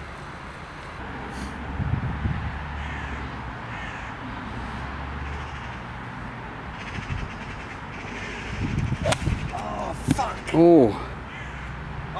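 A golf club strikes the ball off fairway turf about nine seconds in, a single sharp click. About a second later comes a short loud call, over steady wind on the microphone.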